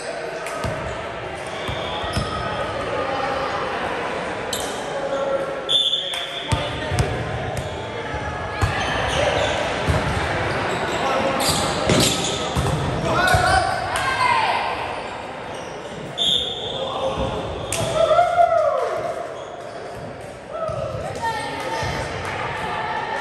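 Volleyball rally in an echoing gym: the ball is struck again and again with sharp smacks as it is served, passed, set and attacked at the net. Players shout short calls during play, loudest about two thirds of the way through.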